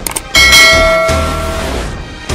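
Intro music with a bright bell-like chime struck about a third of a second in, ringing and slowly fading over the next second and a half.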